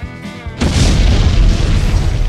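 Cartoon-style explosion sound effect: a sudden loud boom about half a second in, followed by a deep rumble, over background music.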